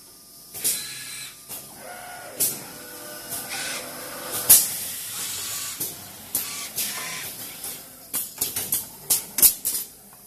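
Automated wiring-harness assembly machinery working: pneumatic cylinders and valves give repeated short hisses of exhausting air and sharp clicks over a steady machine background, with a quick run of clicks and hisses near the end.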